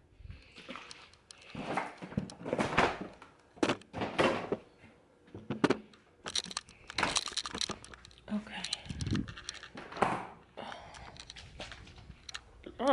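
Rustling and crinkling from things being handled close to the microphone, in a string of short irregular bursts, with a few brief murmured voice sounds between them.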